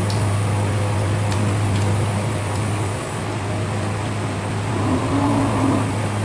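Steady low hum of an electric room fan, with a few faint small clicks of eating by hand.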